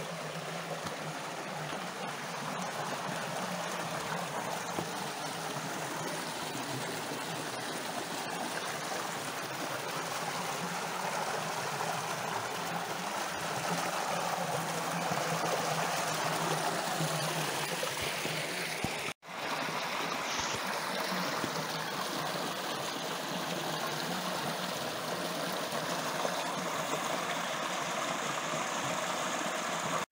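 Shallow creek running over bedrock ledges in small cascades: a steady rush of splashing water. The sound cuts out for a moment about two-thirds of the way through.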